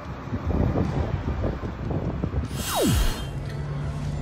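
Outdoor street traffic noise with wind and handling rumble on the phone's microphone. Near the end comes a short burst of hiss with a quickly falling whine, then a steady low hum like an idling vehicle.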